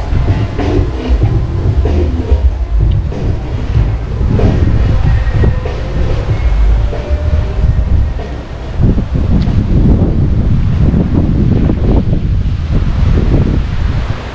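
Wind buffeting the microphone in strong gusts, with music playing in the background that is clearest in the first few seconds.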